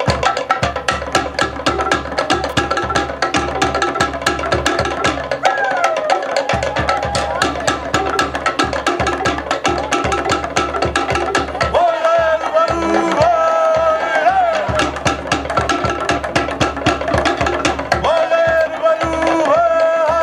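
Polynesian drum ensemble playing a rapid, steady beat for a warriors' dance, with a few high calls that slide downward over it about midway and near the end.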